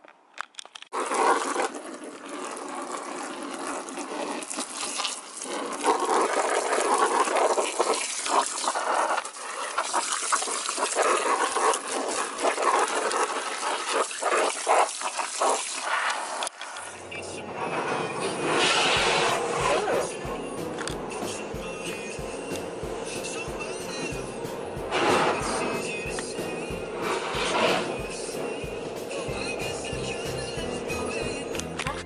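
Water spraying and splashing onto a fabric pushchair seat as it is rinsed. About halfway through it cuts abruptly to background music with a steady beat.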